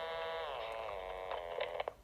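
Sony M-2000 microcassette transcriber playing back a recorded voice through its small speaker: a held tone whose pitch slides down about half a second in, as the speed control is moved, then holds. A few clicks come near the end, just before it stops.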